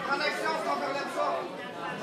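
Many voices talking and calling out over one another, echoing in a large hall: spectators and corners during a cage fight.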